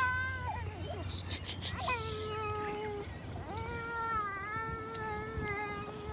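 A young child's voice: two long, held whining notes, the second wavering slightly.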